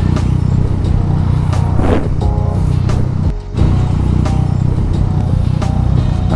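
Yamaha Tracer 900 GT's inline three-cylinder engine idling steadily while the motorcycle waits at a standstill, with music over it.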